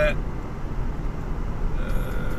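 Car driving, heard from inside the cabin: a steady low rumble of road and engine noise.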